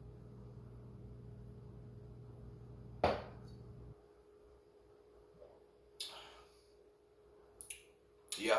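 A man drinking beer from a glass, then a short 'yeah' about three seconds in as the glass goes down on the counter; a few light clinks of glass come near the end.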